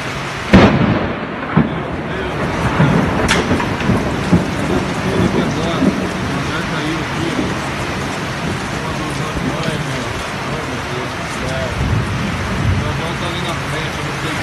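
Heavy rain and wind pouring steadily through a storm-torn hangar roof, with one loud bang about half a second in and a few lower thuds and a sharp crack over the next few seconds.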